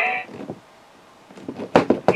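A short high-pitched voice-like sound at the very start, then a few sharp plastic clicks and knocks near the end as the Hug Time Poppy talking doll is handled.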